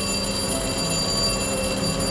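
An electric school bell ringing steadily on a cartoon soundtrack, with a bright, high metallic ring, played over loudspeakers in a hall.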